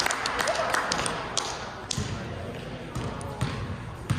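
Basketball bouncing on a gym floor during a game, with a few sharp knocks and squeaks from play, over the background voices of spectators in a large gym with a high ceiling.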